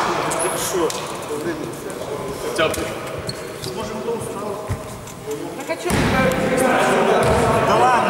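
A basketball bouncing on a gym floor while players talk and call out in a large sports hall. The voices get louder about six seconds in.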